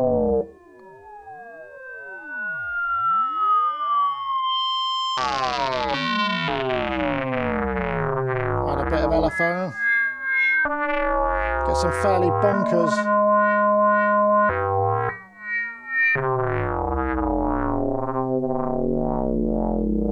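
Novation Circuit Mono Station, a two-oscillator analogue paraphonic synth, played with full glide on oscillator 1 only and the ring modulator up. Notes slide into one another, and pairs of tones bend up and down in opposite directions and cross. It starts faint, gets louder and fuller about five seconds in, and holds one steady chord for a couple of seconds past the middle.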